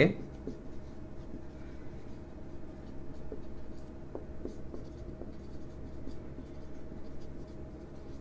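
Felt-tip marker writing on a whiteboard: faint scratchy strokes and small taps as words are written, over a steady low hum.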